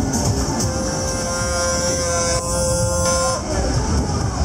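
Parade music with a steady beat, over which a horn sounds one long, steady note, starting about a second in and held for about two and a half seconds, from a passing tourist road train.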